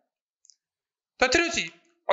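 Near silence, broken by a faint click about half a second in. A little over a second in, a man's voice speaks a short phrase in Odia.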